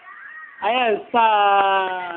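A young child's voice: a short rising-and-falling "ah" and then one long, held, wailing note, cat-like in tone.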